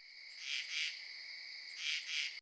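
Crickets chirping in a steady high trill that swells louder twice, about half a second in and near the end.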